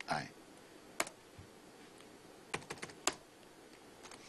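Computer keyboard keys pressed: a quick double click about a second in, then a fast run of about five keystrokes and a last one a moment later.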